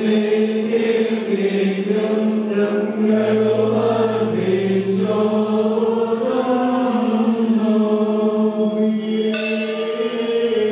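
A group of men chanting an Orthodox liturgical hymn in unison, holding long, slowly changing notes. About nine seconds in, a bright metallic ringing joins, the small bells of marvahasa fans being shaken.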